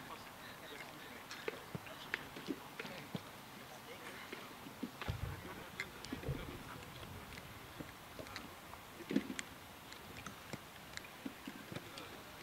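Faint outdoor ambience of a football training pitch: low voices in the background and scattered short knocks and taps. The sharpest knock comes about nine seconds in.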